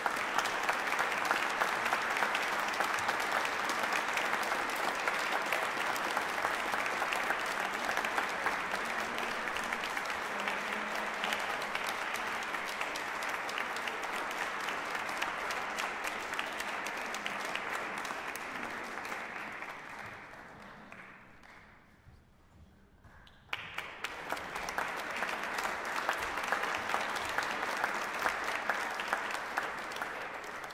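Audience applauding. The applause fades away about two-thirds of the way through and breaks off to near silence, then starts again suddenly and begins to fade near the end.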